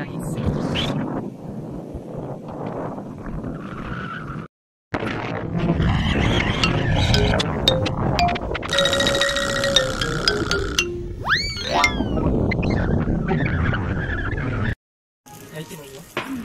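Strong wind buffeting the microphone in loud gusts of rumbling noise, cut in two places by edits. Near the middle a held tone is followed by a springy, sliding-pitch 'boing' sound effect.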